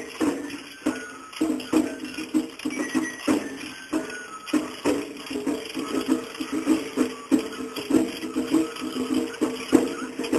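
Japanese festival hayashi music played on a float: drums struck in a fast, steady, repeating rhythm with other percussion.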